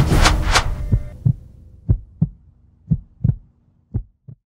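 The trailer's music ends on three quick hits and dies away. It gives way to a heartbeat-style sound effect: low double thuds in three pairs, about a second apart.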